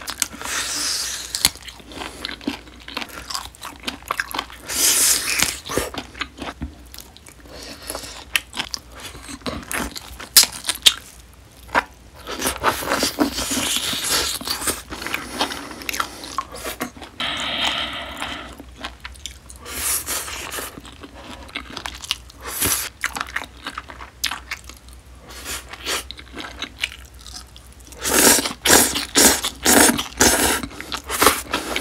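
Close-miked chewing and biting of marinated grilled beef short ribs (LA galbi): irregular wet smacks and crunches, with pauses between mouthfuls. Near the end a louder, quicker run of crunching and slurping comes as a mouthful of dressed scallion salad is eaten.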